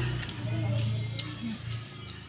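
Background music with a steady low bass line and faint voices, without clear eating sounds.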